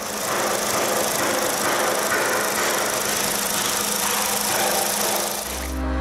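Volkswagen Vento's four-cylinder petrol engine idling, heard from the open engine bay: a steady mechanical running sound with a strong hiss on top.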